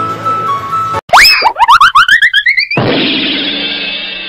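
Background music cuts off about a second in and is replaced by a cartoon boing sound effect: a quick run of about a dozen rising springy glides, followed by a long held, ringing sound that slowly fades.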